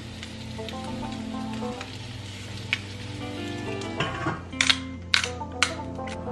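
Background music over an egg sizzling as it fries in a stainless steel skillet. A few sharp clicks come in the last two seconds.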